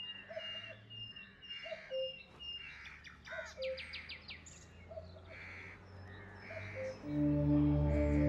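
Birds chirping, short calls repeating about once a second with a quick trill near the middle. About seven seconds in, sustained low music tones swell in.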